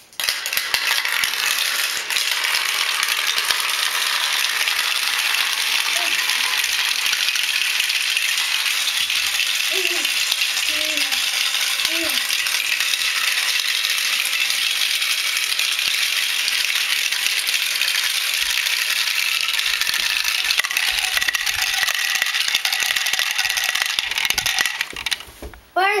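Many glass marbles rolling and clattering down a tall plastic marble run, a dense, continuous rattle of clicks that stops shortly before the end.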